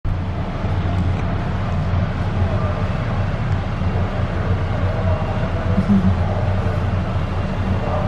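Inside the cabin of the SFO AirTrain, a rubber-tyred automated people mover, running along its guideway: a steady low rumble from the tyres and drive.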